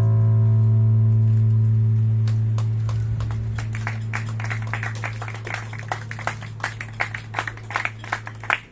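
The last note of an electric bass guitar is left ringing and slowly fades. Scattered applause from a small audience starts about three seconds in and builds toward the end.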